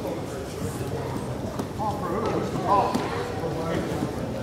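Indistinct voices echoing in a gymnasium, with one louder voice calling out between about two and three seconds in, and a few faint knocks.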